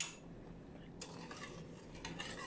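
A metal spoon faintly clinks and scrapes in a stainless steel saucepan of sugar and water as stirring begins. There is a light click at the start.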